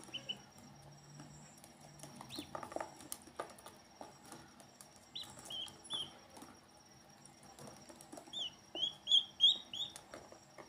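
Ducklings peeping: a few short, falling peeps early and midway, then a quick run of louder peeps near the end, over small splashes and clicks as they paddle in the water.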